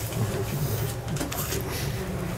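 A steady low hum with scattered small knocks and rustles: people shifting in their seats and handling papers and devices.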